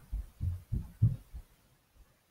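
Footsteps: a run of dull, low thumps about three a second, fading away after about a second and a half as the walker moves off from the laptop's microphone.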